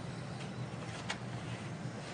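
Quiet room tone: a steady low hum with two faint clicks, about half a second in and about a second in.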